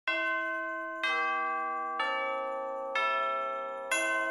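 Music of bell chimes: a bell note struck about once a second, each ringing on and fading, with the pitch stepping down from note to note.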